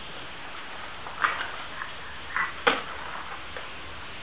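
A few short plastic clicks and taps from a baby walker and its tray toys, the sharpest about two-thirds of the way in, over a steady low hum.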